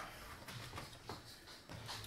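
Quiet room tone with a few faint clicks. A steady low hum starts near the end.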